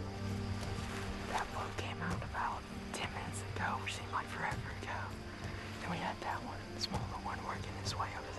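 Whispered speech, a quiet voice talking in short breathy phrases, over soft steady background music.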